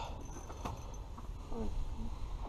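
Quiet low hum with two faint clicks about half a second in and a brief faint murmur of a voice near the end.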